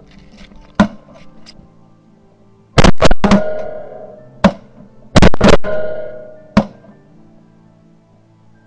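Shotgun blasts at ducks flying overhead: two quick volleys of about three shots each, around two seconds apart, each volley trailing off in a long echo. Shorter sharp reports come about a second in and between and after the volleys. Background music plays underneath.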